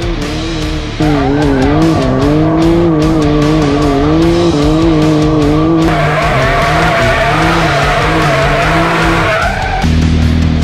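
Can-Am Maverick X3 side-by-side with an SC-Project exhaust revving up and down as it spins donuts, its tires skidding and squealing on the asphalt. The engine gets louder about a second in, and the tire noise grows from about six seconds in.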